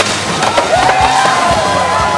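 A skateboard slam: a sharp impact as a skater and board hit the concrete at the bottom of a big stair jump, followed by a steady noisy clatter with a wavering drawn-out tone over it.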